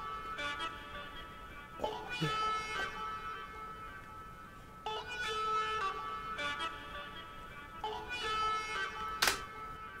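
Isolated talk box vocal part: a synth tone shaped into sung words through a talk box, in phrases of held notes with a new phrase starting about every three seconds. A sharp click sounds near the end.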